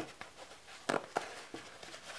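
Fingers pressing and smoothing duct tape down over the tip of a pool-noodle foam sword: a handful of short taps and crinkles of the tape and foam.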